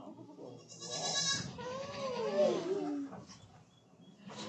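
A goat bleating: one long call that wavers up and down in pitch, starting about a second and a half in. A short rasping noise comes just before it.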